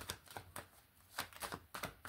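A tarot deck being shuffled by hand: a soft, quick run of cards slapping and clicking against each other, with a brief lull just before the middle.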